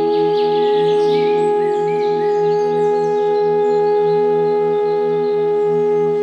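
Meditation music: a flute holds one long steady note over a low drone that pulses about twice a second, with a few short bird chirps a second or two in.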